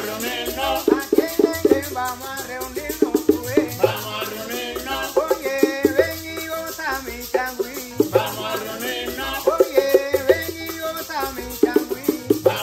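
Traditional changüí band playing live: maracas shaking steadily over bongos and a tres guitar picking a melody, with a low bass line that changes note every couple of seconds.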